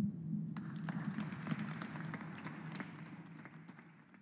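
Small audience applauding, the clapping thinning out and fading away over a few seconds.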